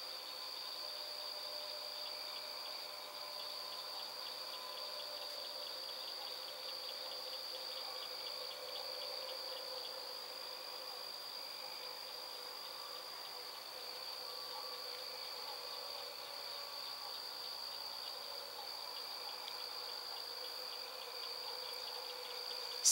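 Steady chorus of night insects: a continuous high trill with a rapid pulsing beneath it.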